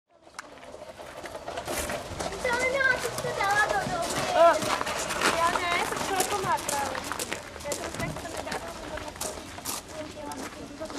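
Children's high-pitched voices calling and chattering, fading in over the first couple of seconds, with scattered short sharp clicks.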